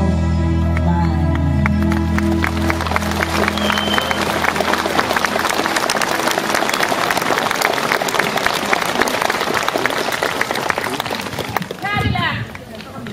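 Audience applauding: dense, even clapping that builds as the last held chord of the music fades over the first few seconds, then carries on steadily.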